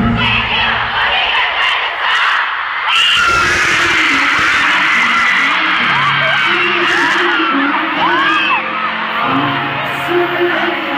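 Concert crowd of fans screaming and cheering, full of high shrieks that rise and fall, over steady background music. The screaming swells about three seconds in and stays loud.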